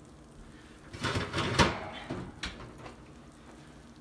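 Kitchen handling noise: about a second in, a short burst of rustling and clatter that ends in a sharp knock, then a single click a moment later.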